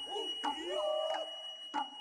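Noh hayashi ensemble: shoulder drums (kotsuzumi) struck sharply a few times, between the drummers' long, sliding vocal calls, over a steady high note from the nohkan flute that stops at the end.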